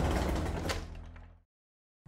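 The closing chord of a short intro theme-music sting, with a few sharp hits, ringing on and fading out about a second and a half in.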